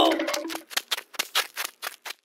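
Cartoon sound effect of quick, light tiptoe footsteps: a run of sharp clicks, about six a second, starting about half a second in, after a brief voice-like sound fades out.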